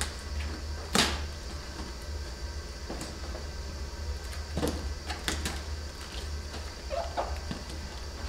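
Fingers picking and tugging at packing tape and staples on a cardboard box: scattered scratches, taps and clicks, the loudest a sharp snap about a second in, over a steady low hum.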